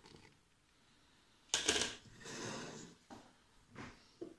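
Flour being poured from a container into a stainless steel stand-mixer bowl: a short rushing noise about a second and a half in, then a fainter hiss.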